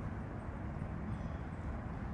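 Steady outdoor background noise with a faint low hum running under it; no distinct event stands out.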